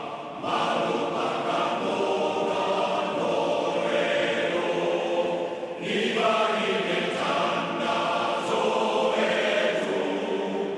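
Choir singing slow, held chords that change every few seconds.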